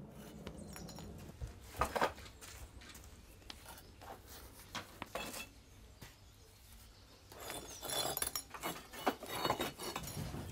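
Light clinks and knocks of hard ceramic pieces being handled at a wood-fired kiln's door. A couple of louder knocks come about two seconds in, and the clinking is busiest near the end.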